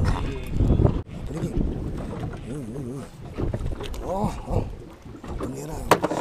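Indistinct voices, one wavering in pitch, over a low rumble of handling and boat noise.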